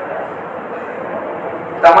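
Steady, even background hiss with no words, then a man's voice starts loudly near the end.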